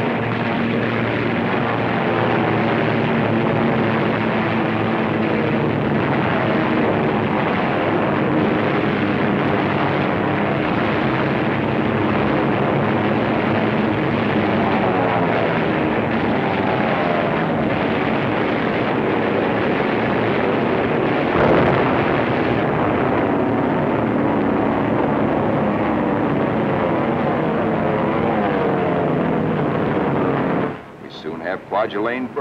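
Piston aircraft engines droning steadily on an old film soundtrack, their pitch sliding up and down. A short, sharp burst cuts in about two-thirds of the way through.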